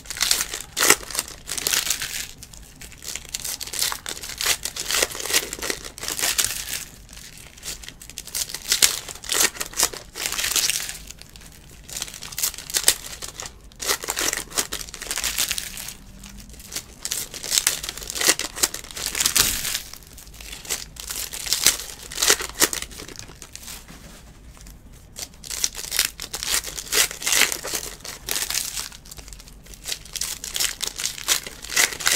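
Foil wrappers of Panini Select Basketball trading-card packs crinkling and tearing as the packs are ripped open by hand, in irregular bursts.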